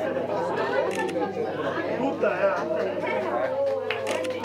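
Overlapping chatter of several people talking at once in a large indoor hall; no single voice stands out.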